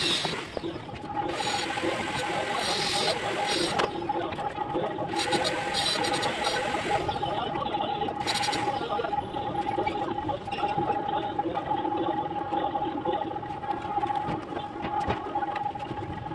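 Bricklaying with hand trowels: steel trowels scraping and spreading cement mortar and bricks being set, in spells of harsh scraping, over a steady humming tone that starts about a second in.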